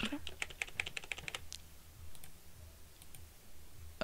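Typing on a computer keyboard: a quick run of keystrokes in the first second and a half, then a few single, spaced-out key clicks.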